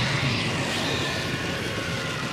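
A steady, rushing noise with a faint low hum underneath: an energy sound effect from the anime episode playing.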